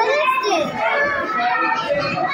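Many children's voices chattering and calling over one another, a continuous babble of overlapping chatter with no single voice standing out.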